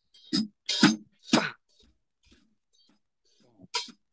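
A drummer voicing a drum pattern with his mouth: three short, sharp syllables about half a second apart, then a brief pause and one more short sound near the end.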